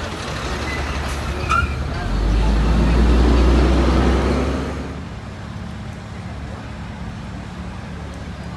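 Street traffic: a motor vehicle passes close by with a low engine rumble that swells about two seconds in and fades near the five-second mark, leaving a steady low engine hum from nearby traffic.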